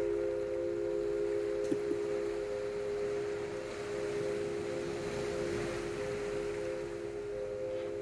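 Meditative ambient sound piece: a few steady, held tones over a soft, even rushing wash of noise.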